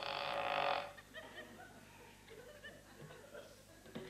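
Studio audience laughing, a short burst that stops about a second in.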